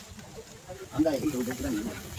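A faint hiss, then about a second in a person's voice speaks briefly.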